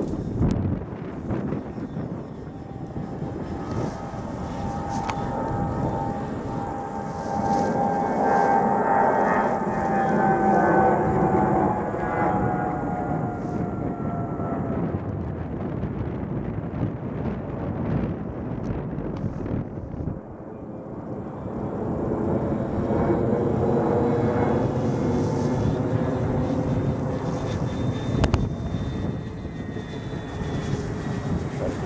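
Twin electric motors and propellers of a FlightLineRC F7F-3 Tigercat RC warbird running at power through takeoff and flight. The whine swells and drops in pitch as the plane passes, twice.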